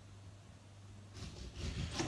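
A kitchen knife slicing a lemon in half on a cutting board: soft cutting and handling noises begin a little over a second in, over a faint steady low hum.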